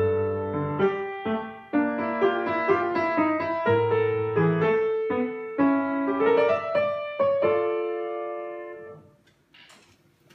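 Solo piano: a melody over bass chords, notes struck one after another, ending on a held chord that dies away about nine seconds in.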